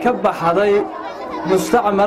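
A man's voice through a handheld microphone, speaking or reciting in Somali in phrases with drawn-out, even-pitched syllables.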